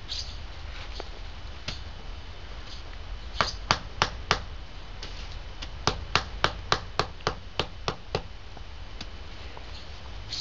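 A rubber mallet tapping basalt cobblestone setts down into a compacted grit bed: four quick sharp taps, a pause, then about nine more at roughly three a second.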